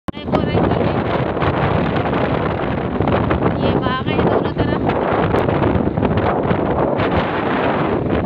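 Wind rushing and buffeting the phone's microphone from a moving vehicle, mixed with road noise.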